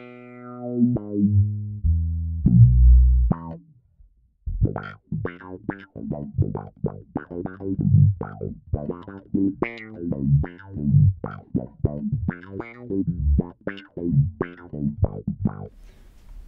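Electric bass, a Fender Mustang bass, played through a DOD FX25 envelope filter (auto-wah) with its range turned up for a longer filter sweep. A few held low notes come first, then a brief pause, then a fast run of short plucked notes.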